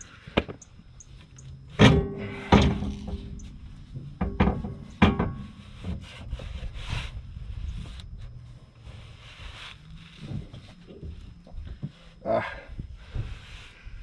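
Steel sway bar knocking and scraping against the rear axle beam as it is worked into a tight fit under the car: four sharp knocks in the first five seconds, the first with a short ring, then quieter rubbing and scraping.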